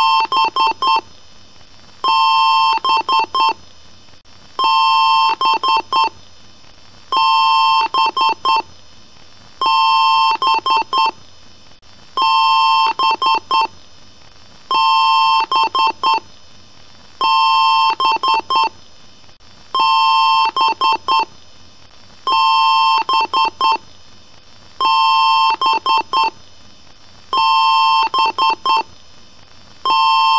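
Computer BIOS beep code: one long beep followed by a few quick short beeps, the pattern repeating about every two and a half seconds, around a dozen times.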